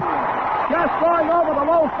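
A male announcer's voice calling a home run, over crowd noise from the ballpark. A noisy roar fills the first half-second before the voice comes back in.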